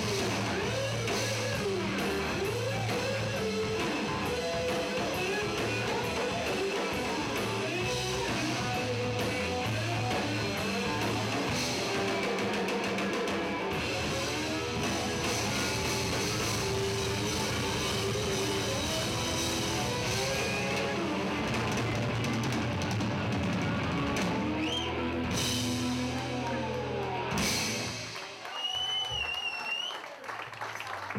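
Live rock band playing an instrumental passage: an electric guitar plays a lead with bent notes over drum kit and bass. The band ends on a final hit about 27 seconds in, which rings away, and a high wavering whistle-like tone follows near the end.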